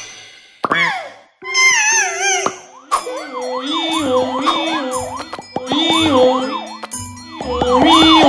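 Cartoon sound effects: a short wobbling falling tone, then from about three seconds a siren-like wail that rises and falls about twice a second, over steady music notes, as for an ambulance arriving.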